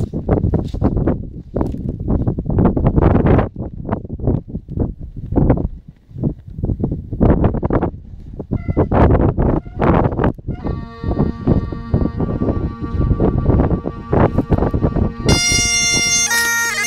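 Heavy, irregular wind buffeting the microphone; about ten seconds in, Highland bagpipe drones strike up in a steady chord, and near the end the chanter joins with a melody, the wind still gusting over it.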